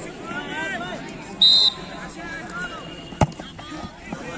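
A referee's whistle gives one short, steady blast about a second and a half in, signalling that the penalty may be taken, over the chatter of onlookers. A single sharp knock comes near the end.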